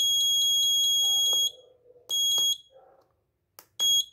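Piezo buzzer of an Arduino bell timer giving a steady high-pitched beep that cuts off about one and a half seconds in. Two short beeps follow as the setting push buttons are pressed, with a few faint clicks between them.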